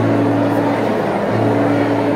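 Harmonium holding low reedy notes that change about a second in, over a steady background hiss.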